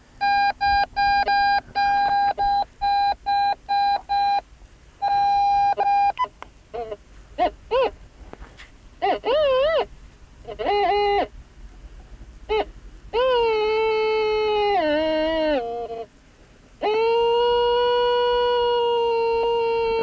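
Treasure Master Pro metal detector sounding its target tone over a strong signal from buried metal: a quick run of short beeps, about three a second, then tones that wobble and step in pitch, ending in two long held tones.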